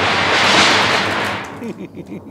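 Thunderclap sound effect: a loud crash that swells, peaks about half a second in and dies away over about a second, with a voice starting near the end.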